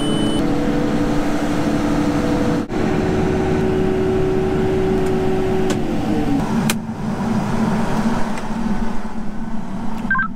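Case IH combine running with its unloading auger emptying grain into a semi grain trailer, heard from inside the cab: a steady machine drone with a held whine. About six seconds in, the whine slides down in pitch and a sharp click follows.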